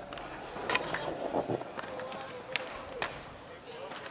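Several people talking at once in the open, with a few sharp clicks or knocks scattered through.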